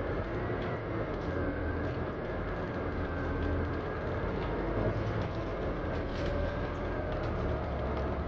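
Steady drone of a moving city bus heard from inside: low engine hum and road noise, with a faint high whine held throughout.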